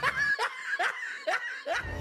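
Quiet laughter in about five short, breathy bursts.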